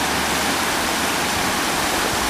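A steady, even hiss with no breaks or distinct events, like rushing water or constant background noise.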